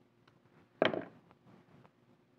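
Fly-tying scissors handled at the vise: one sharp knock about a second in, with a few faint ticks around it.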